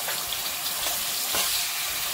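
Hot oil sizzling steadily in a kadai as a tadka of mustard seeds, cumin, chillies, peanuts and dry coconut slices fries, with a steel ladle starting to stir near the end.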